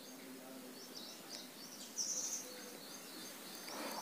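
Faint background noise with a small bird chirping briefly, a short high trill about two seconds in.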